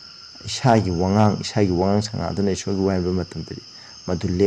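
A man speaking in Manipuri, from about half a second in until near the end, over a steady high-pitched drone of crickets that carries on beneath and between his words.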